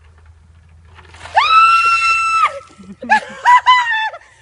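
A woman screaming as a bucket of ice water is dumped over her head: one long high-pitched scream starting about a second in, then a few short shrieks near the end.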